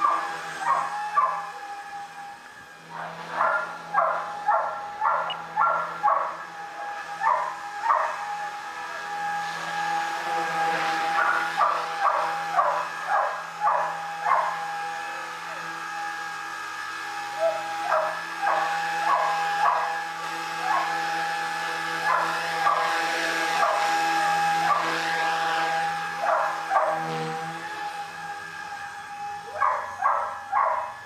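A dog barks repeatedly in runs of several barks, the loudest sound, over the steady whine of a Blade 180 CFX RC helicopter's electric motor and rotor blades. The whine sweeps up and down in pitch a couple of times.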